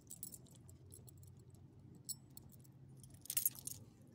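Metal tags and rings on a small dog's collar and harness jingling in short light clicks as the dog squirms on its back while being petted, with a louder jingle about three and a half seconds in, over a steady low hum.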